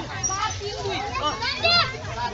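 A group of boys and young men shouting and chattering over one another, with a loud high call near the end.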